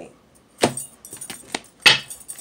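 Sharp clicks and knocks of a deck of cards being handled and set against a table, with two loud knocks, about half a second in and near the end, and lighter clicks between them.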